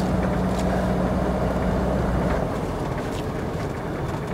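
Peugeot 505 GR estate's carburettor petrol engine running steadily while driving, with road noise, heard from inside the cabin. The engine drone fades about two and a half seconds in, leaving mostly road noise.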